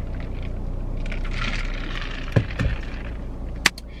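Sipping a thick iced drink through a straw from a plastic cup: a soft sucking hiss for a couple of seconds. A few low knocks and a sharp click come near the end. A steady low hum of the car cabin runs underneath.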